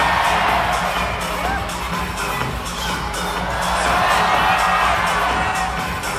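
Dance music with a heavy beat over an audience cheering and shouting; the cheers swell at the start and again about four seconds in.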